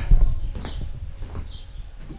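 Low rumble from a hand-held camera being carried, loudest at the start, with a few soft knocks like footsteps and two faint high chirps.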